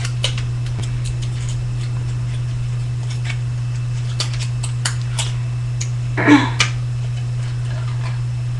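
Scissors snipping thin aluminum soda-can sheet: a scattered series of small sharp clicks, over a steady low electrical hum. A louder brief noise comes about six seconds in.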